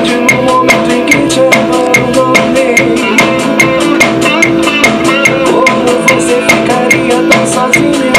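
Band music with a steady drum-kit beat, evenly spaced hits over sustained backing tones and a wavering melody line in the middle: drums being recorded for a pop song.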